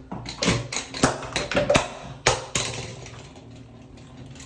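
Handling noise: a quick, uneven run of sharp clicks and taps, about nine in the first two and a half seconds, then a softer fading rustle.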